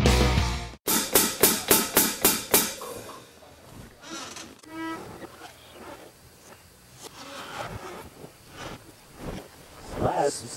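Heavy rock band playing in a recording studio; the loud full-band music stops abruptly under a second in. It is followed by about eight sharp, evenly spaced instrument hits, about four a second, that die away by about three seconds in, leaving quiet, scattered studio sounds.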